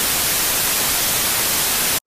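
Television static: a loud, steady white-noise hiss used as a transition effect, cutting off suddenly at the end.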